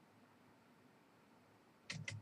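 Near silence: room tone, with the first computer keyboard keystroke just at the end.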